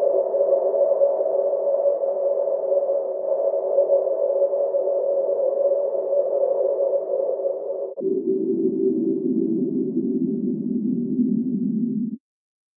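Cello sustaining a steady, hissing band of bowed sound in the middle register. About eight seconds in it switches abruptly to a lower, darker band.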